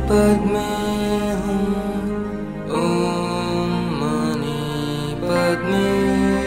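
A Buddhist mantra sung in long held notes that change pitch every second or so, over musical accompaniment with a steady low drone.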